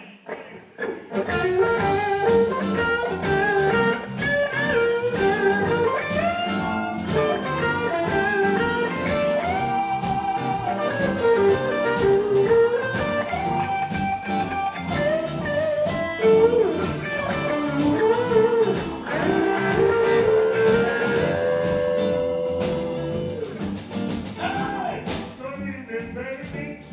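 Live electric blues band playing the instrumental intro of a song: electric guitar lead with bent notes over drums, electric bass and keyboard. The band comes in about a second in.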